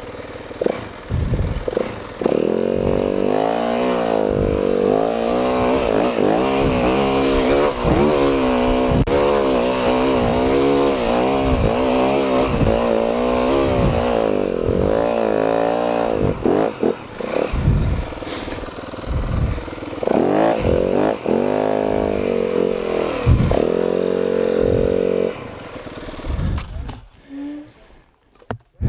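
Dirt bike engine revving up and down over and over as it climbs a steep hill under load, with a few knocks. The engine sound drops away shortly before the end.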